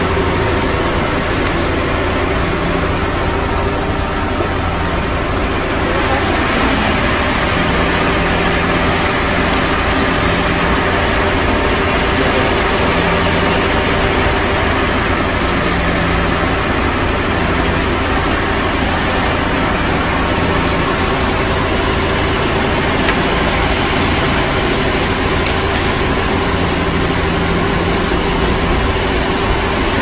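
A loud, steady mechanical drone with a few constant hum tones, and a low tone that comes and goes every couple of seconds.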